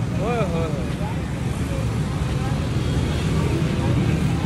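Steady low rumble of outdoor traffic noise, with faint voices in the background and a short voiced sound about a quarter second in.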